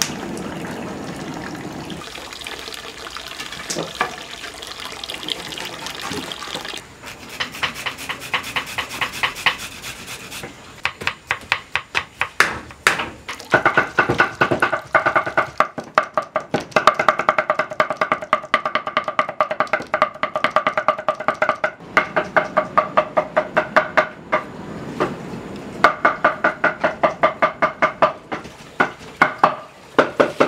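Fast, even chopping with two metal cleavers on a wooden board, mincing a spice paste, with the blades ringing on each strike. It starts about ten seconds in and comes in bursts with short pauses.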